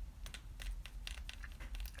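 Small irregular clicks and scratches of hands handling things close to the microphone.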